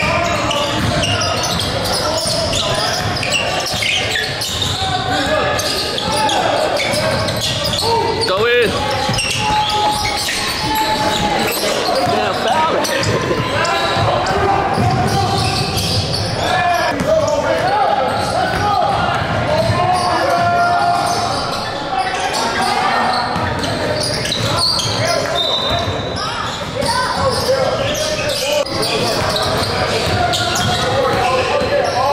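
Live game sound from an indoor basketball court: a basketball bouncing on the hardwood floor and the knocks of play, under indistinct shouts and talk from players and spectators, echoing in the large hall.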